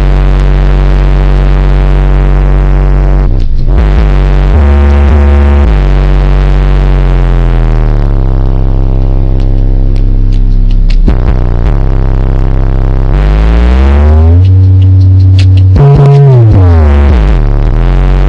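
Very loud, deep bass from a car audio subwoofer: long low notes that step between pitches and slide up and down, strong enough to set liquid in a bowl rippling.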